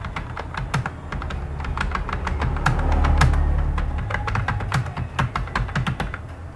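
Computer keyboard being typed on: a quick, irregular run of key clicks as a line of text is entered, over a low hum that swells in the middle.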